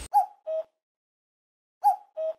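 An edited-in two-note sound effect, a higher note followed by a lower one, heard twice about a second and a half apart, with dead silence around it.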